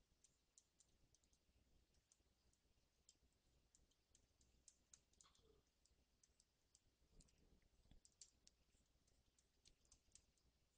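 Near silence with faint, irregular small clicks, several a second, from the computer input device used to paint.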